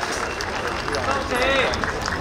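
Crowd murmur and scattered voices from a standing audience, with one voice calling out about a second and a half in, over a steady low hum.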